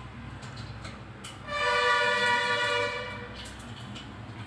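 A horn sounds once for about two seconds, starting about one and a half seconds in: a steady two-note chord that holds its pitch, with a few small clicks around it.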